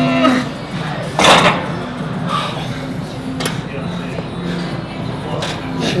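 Background music under a bodybuilder's vocal noises between sets. A held, strained voice sound ends just after the start, then a sharp, forceful exhale comes about a second in, with a few light clicks from the gym equipment later.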